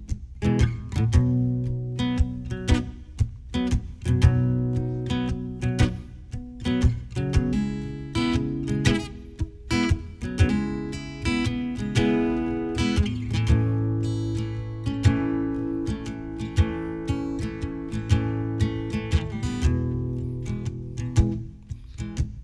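Solo acoustic guitar playing an instrumental passage, picked and strummed chords ringing out, with a brief lull near the end.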